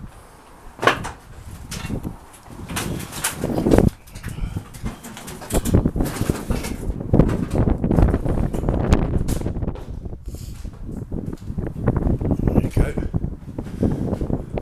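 Footsteps scuffing and clattering over a debris-strewn floor, with a few sharp knocks in the first four seconds and a busier stretch of scuffs and clatter after that.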